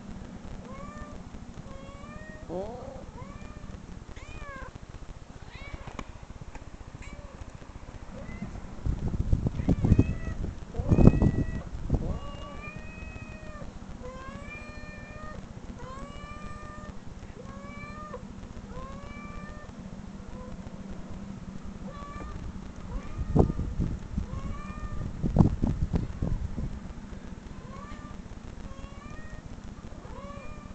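Recorded cat meows played back from a computer: a long series of short, high, rising-then-falling meows, about one or two a second. Two bouts of louder low rumbling and knocks break in, about ten seconds in and again near 24 seconds.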